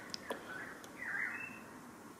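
Faint handling noise from a hand-held radio-control transmitter as its rudder stick is pushed: a few soft, quick clicks in the first second over a quiet room.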